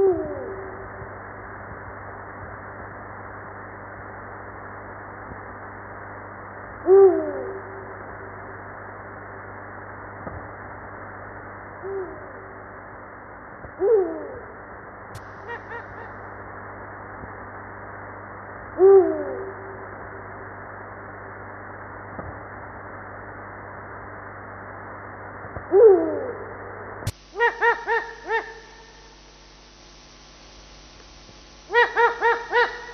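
Eurasian eagle-owl hooting: short deep hoots, each sliding down in pitch, repeated every five to seven seconds over a steady recording hiss. Near the end the sound cuts to a different recording with a quick run of four sharper calls.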